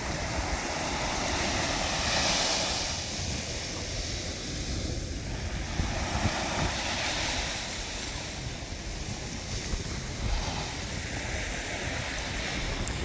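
Small waves breaking and washing up the sand at the water's edge, swelling and easing as each one comes in, with wind rumbling on the microphone.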